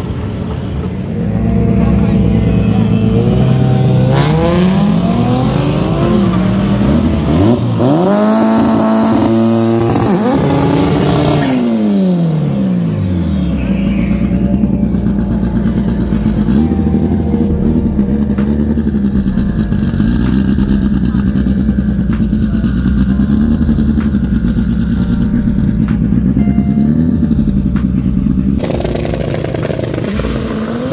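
A drag car's engine revs up and is held high with the hiss of spinning tyres during a burnout, then drops steeply back. It then runs at a steady fast idle with small rev blips while staging.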